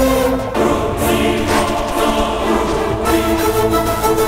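Background music of a dramatic TV score: sustained choir-like voices over held orchestral chords, swelling about a second in.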